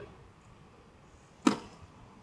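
A single sharp click about a second and a half in, from a DVD box set being handled.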